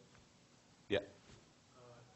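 Quiet lecture-hall room tone, broken about a second in by one brief, sharp vocal sound. Faint speech begins near the end.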